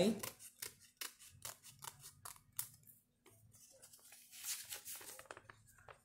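Scissors snipping through a folded sheet of paper in a run of quick short cuts, trimming the edge of a petal shape.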